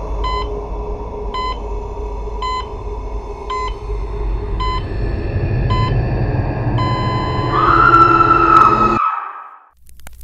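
Dark ambient sound design: a low rumbling drone under an electronic beep repeating about once a second. About seven seconds in the beep turns into one long unbroken tone, like a heart monitor flatlining. A higher tone swells over it, and everything cuts off suddenly about nine seconds in.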